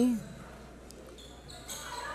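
Echoing gymnasium ambience during a volleyball rally, with a single faint knock about a second in and a rise of distant voices near the end.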